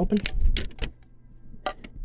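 Small metal card tin being handled while it is being opened: a quick run of sharp clicks and clinks in the first second, then two lone clicks near the end.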